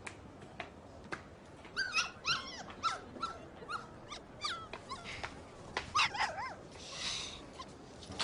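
A puppy whimpering: several short, high whines in small clusters.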